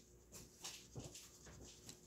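Near silence with faint, scratchy strokes of a wax crayon colouring on a paper worksheet.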